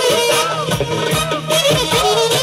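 Balkan folk dance music from a wedding band: an ornamented lead melody that bends and trills over a steady drum beat.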